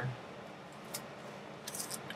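Plastic comic-book sleeve crinkling as a bagged comic is handled and set down: a single click about a second in, then a short burst of crisp crackling near the end.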